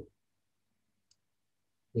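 A single faint computer-mouse click about a second in, amid near silence, with speech trailing off at the start and resuming near the end.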